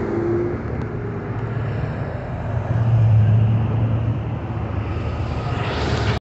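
Road traffic running past: a steady rush of cars, with one engine's low hum swelling a little past the middle.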